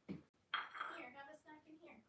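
A voice: one pitched sound about a second and a half long, falling slightly in pitch, just after a brief low knock.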